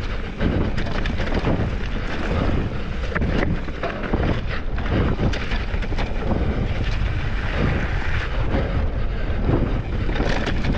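Mountain bike descending a rough, rocky dirt trail at speed, heard on a rider-mounted camera: tyres running over dirt and stone with frequent rattles and knocks from the bike over the bumps, under a steady rumble of wind on the microphone.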